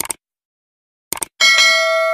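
Subscribe-button animation sound effect: a mouse click, then a quick double click about a second in, followed by a bright notification-bell ding that rings for about a second.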